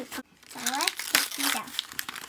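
Cardboard and paper-pulp packaging being torn and peeled open by hand, crinkling and crackling, loudest about a second in, with brief voices over it.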